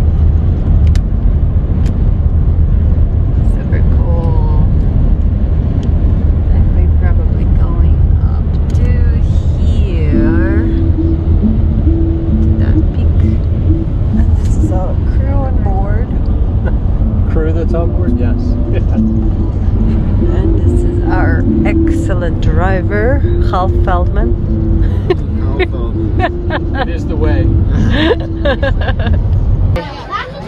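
Steady low rumble of road and engine noise inside a minivan driving at highway speed.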